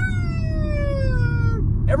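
A man's voice holding one long, high falsetto note that slowly falls in pitch for about a second and a half, over the steady low rumble of a car on the road heard from inside the cabin.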